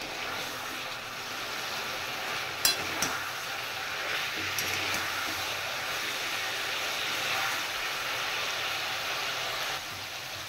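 Fried parshe fish sizzling steadily in hot oil and green chilli paste in a metal wok. A metal spatula stirs it, clinking against the wok a few times about three seconds in.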